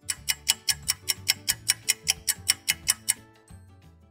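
A clock-ticking sound effect marking time passing: fast, even ticks, about five a second, over low soft music. It stops a little after three seconds in.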